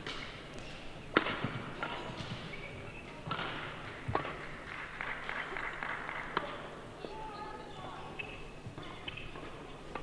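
A badminton rally: sharp racket strikes on the shuttlecock every second or two, the loudest about a second in, with short squeaks of court shoes on the floor in a large hall.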